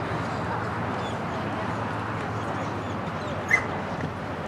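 A German Shepherd barks once, short and sharp, about three and a half seconds in, over a steady outdoor background hiss.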